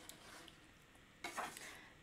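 Faint, soft sounds of chopsticks stirring and lifting oily noodles in a metal tray, with a slightly louder brief rustle about a second and a quarter in.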